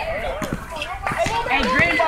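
Background voices of people talking and calling out, with a few short knocks.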